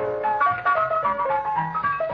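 Radio studio orchestra playing an up-tempo instrumental: a quick melody of short notes stepping up and down.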